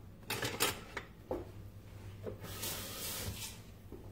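Light clicks and knocks of kitchen utensils and dishes being handled on a countertop, a few in quick succession at the start, then a soft hiss for about a second past the middle.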